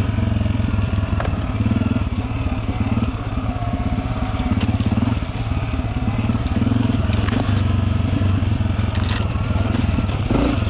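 Dirt bike engine running at low, fairly steady revs, with a few brief knocks from the bike as it rolls over the rough, muddy trail.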